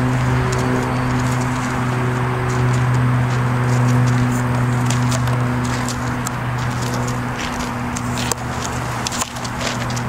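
A steady low machine hum with a few higher overtones, level throughout, with a few light clicks over it.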